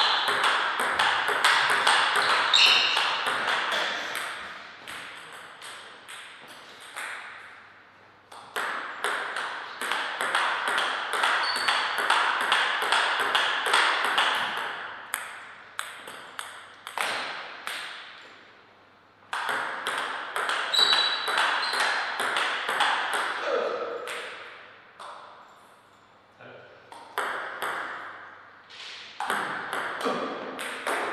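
Table tennis ball rallying: quick, sharp ticks as the celluloid-type ball strikes the paddles and bounces on the table. The ticks come in several runs of a few seconds each, with quieter pauses between points, and voices murmur in the background.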